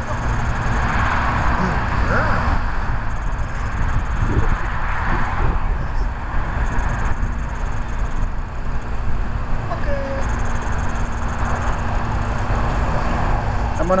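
Steady low outdoor rumble with a faint steady hum underneath, with no clear single event standing out.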